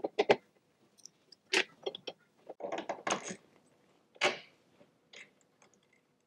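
Metal spanners clinking and clicking against the bolts and fittings of a go-kart brake master cylinder as it is being unbolted: a string of short, irregular metallic clicks and rattles.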